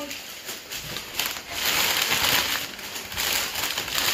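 Packing paper crinkling and rustling as it is pulled out of a shipping box, an uneven crackle that swells about a second in and keeps going.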